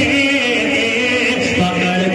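A man singing a naat, an Urdu devotional poem, into a microphone in long held melodic notes, dropping to a lower note about one and a half seconds in.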